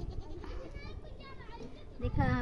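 Goat bleating faintly: two short, quavering bleats close together, over a low background rumble.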